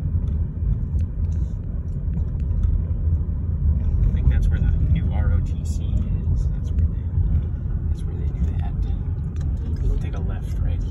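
Steady low rumble of a car in motion, engine and road noise, heard from inside the cabin.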